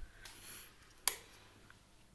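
A single sharp click about a second in, after a brief soft rustle.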